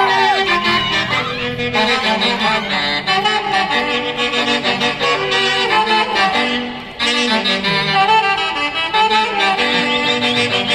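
Live band music accompanying a folk dance, a melody over a steady accompaniment. It dips briefly about seven seconds in and comes straight back.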